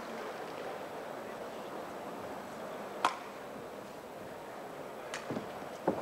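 Steady hum of indoor sports-hall ambience between badminton rallies, with a sharp click about three seconds in and two smaller clicks near the end.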